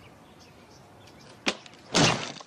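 A person drops from a tree branch onto a plastic lawn chair: a sharp crack about one and a half seconds in, then a louder crash of body and chair at the very end. Before that, only a faint outdoor background.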